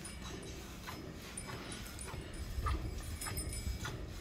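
Milk streams from hand-milking a Gir cow squirting into a steel bucket in short, irregular spurts, about three a second, over a low rumble.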